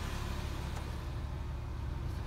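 A car engine idling steadily, a low, even hum.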